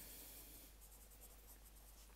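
Faint scratching of a pencil writing on lined notebook paper.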